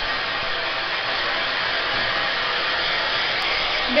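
Hand-held hair dryer blowing steadily, drying a Chihuahua's coat.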